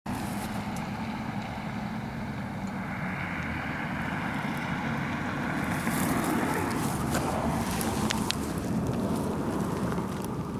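Wind on the microphone, a steady rushing that swells slightly toward the end, with a few sharp clicks about seven and eight seconds in.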